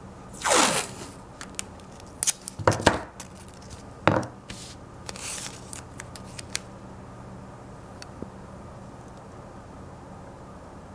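Blue painter's masking tape being peeled off its roll in several short rips, the loudest about half a second in and others near three and four seconds, followed by a few small clicks as strips are torn and pressed onto paper.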